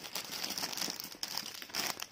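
Clear plastic poly bag around folded clothing crinkling continuously as it is handled.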